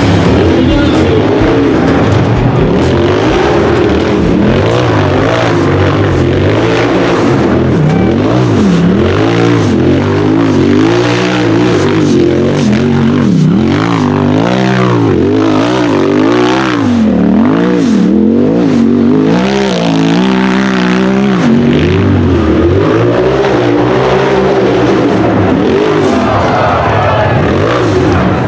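Race UTV engine revving hard and repeatedly under load on a steep rocky hill climb, its pitch swinging up and down over and over as the throttle is worked.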